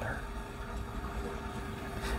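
Low, steady room rumble with a faint continuous hum, with no distinct event.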